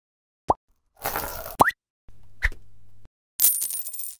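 Logo-intro sound effects: a short rising blip about half a second in, a second-long whoosh ending in another rising blip, a low steady hum with a click in the middle, then a bright shimmering swoosh near the end.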